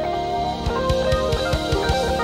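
Live jazz-fusion band playing: electric guitar with effects over keyboards, bass and a drum kit with steady kick-drum hits.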